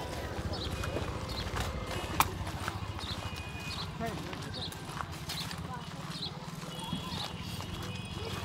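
Distant crowd voices over a steady low rumble, with a single sharp click about two seconds in.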